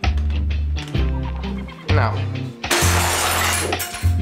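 Background music, broken about three seconds in by a loud crash lasting about a second: plastic Blokus tiles clattering and scattering across a wooden table as the board is knocked aside.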